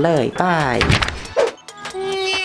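A young man's voice drawing out a sign-off in a sing-song rise and fall, then a short thunk about a second and a half in, over faint background music.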